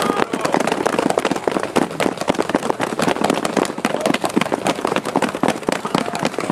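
Dense, irregular crackling made of many small, rapid pops, from burning fire-show props.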